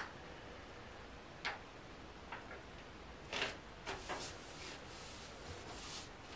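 Faint rustling and rubbing as a heat transfer vinyl sheet is laid onto a nylon bag and smoothed flat by hand: a few short, soft swishes, coming closer together in the second half.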